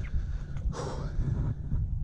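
Wind buffeting the microphone in a low, fluttering rumble, with a person's breathy exhale about three-quarters of a second in.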